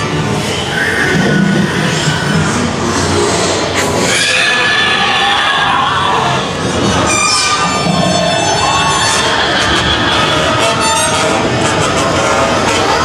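Loud, unbroken mix of eerie music and sound effects from a haunted-house attraction's audio, with high, wavering tones through the middle stretch.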